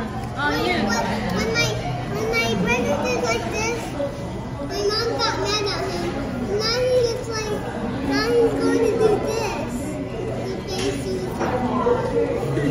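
Children talking and exclaiming in high voices, with a steady low hum underneath.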